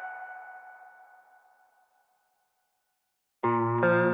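Background music: the last notes of one track fade out within about a second, then silence, and a new track begins near the end with a steady run of pitched notes.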